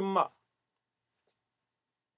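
A man's voice breaks off in the first moment, then dead silence.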